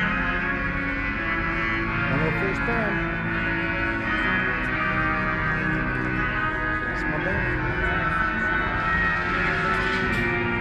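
Music with a voice, played over the speedway's public-address system and echoing across the grandstands.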